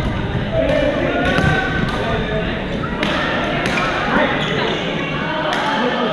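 Badminton rackets hitting shuttlecocks in a gymnasium: sharp hits about once a second from several courts, over a steady mix of players' voices and footsteps echoing around the hall.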